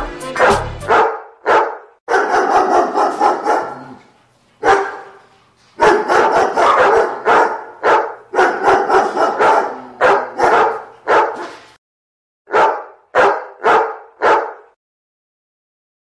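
A dog barking in rapid runs of barks, then four single barks about half a second apart before it stops.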